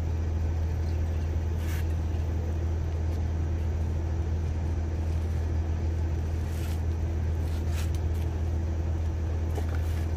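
Steady low hum of a running motor, with a few faint clicks.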